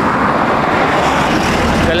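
A road vehicle passing close by: a loud, steady rush of tyre and engine noise, with a deeper rumble joining about a second in.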